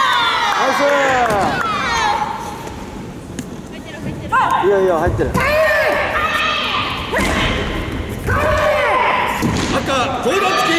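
Supporters' high-pitched shouts of encouragement, coming in three bursts; one call is "iiyo" ("good!"). A few dull thuds sound beneath the shouting.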